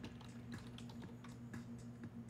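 Typing on a computer keyboard: faint, irregular key clicks several a second, over a steady low electrical hum.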